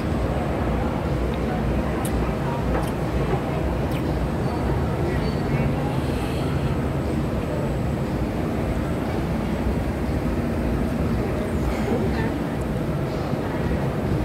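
Shopping-mall atrium ambience: a steady low rumble of building ventilation and machinery with an indistinct murmur of distant voices and a few faint clicks.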